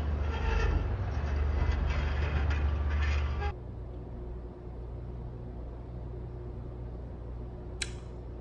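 Low rumbling background drone of an animated horror story's soundtrack, cutting off suddenly about three and a half seconds in. After it comes quiet room tone with a faint steady hum, and a single sharp click near the end.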